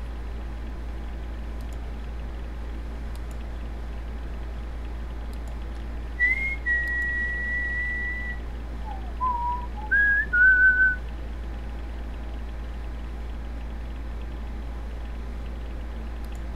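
A person whistling a few notes: one long high note held for about two seconds, then a short lower note, then two quick notes in between, over a steady low hum.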